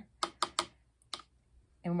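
Paintbrush being dipped into a water container, knocking against it: three quick clicks close together, then two fainter ones about a second in.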